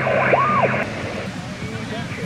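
Portable HF transceiver's speaker giving band noise and heterodyne whistles that glide up and down in pitch as the tuning knob is turned. The sound cuts off suddenly a little under a second in, leaving quieter hiss and faint, wavering received speech.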